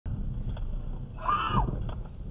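Steady low rumble of a car heard from inside the cabin on dashcam audio. About a second in comes one brief high-pitched sound that rises and falls in pitch, the loudest moment.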